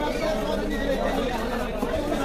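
Chatter of several people talking over one another, with no single voice standing out.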